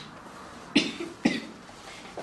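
A person coughing twice, two short coughs about half a second apart.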